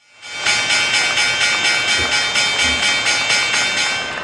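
Electronic logo sting sound effect: a synthetic shimmer with steady high tones, pulsing about five times a second, starting suddenly just after a moment of silence.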